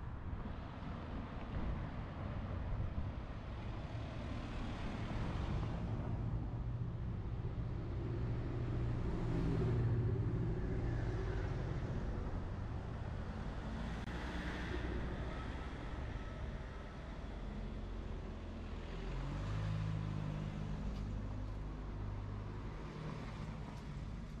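City street traffic: several cars passing one after another, with the low hum of a heavier engine swelling about ten seconds in and again near twenty seconds.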